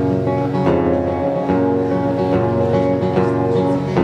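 Acoustic guitar strummed in a steady rhythm, chords ringing on between the strokes, with no voice over it.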